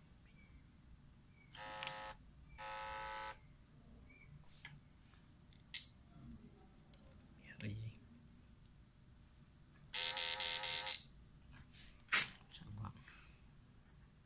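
Home-built push-pull inverter's transformer buzzing in three short bursts, the last about a second long, as it is powered for a test. Sharp clicks come between the bursts as the wires are connected.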